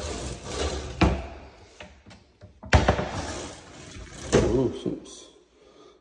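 Wooden kitchen cabinet doors and a drawer being opened and shut, with two sharp knocks about one second and nearly three seconds in, and the drawer sliding between.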